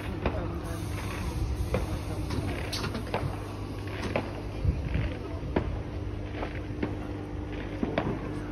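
Class 318 electric multiple unit standing at the platform, its equipment giving a steady hum with a held mid-pitched tone, and a scatter of sharp clicks about once a second.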